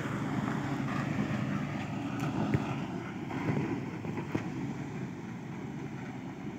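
A vehicle engine running steadily under wind noise on the microphone, growing gradually quieter.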